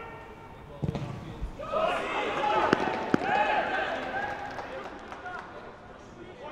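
Football being kicked during open play, with sharp thuds about a second in and twice around three seconds in, amid players shouting to each other on the pitch.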